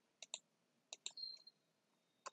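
A few faint, sharp clicks at a computer: two close together about a quarter second in and another near the middle, followed by a brief faint high-pitched tone.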